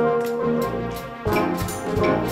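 Youth band playing, mixed from separately recorded home performances: trumpets, trombones and tuba hold sustained notes, then about a second in the drum kit and percussion come in under a fuller, louder brass chord.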